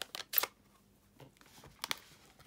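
Clear acrylic stamp block with cling stamps being handled: a few sharp plastic clicks and taps right at the start, then a quiet gap and two more clicks near the end.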